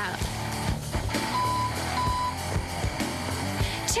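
A tow truck's reversing alarm beeping twice, two short steady beeps about half a second apart, over a low steady rumble and background music.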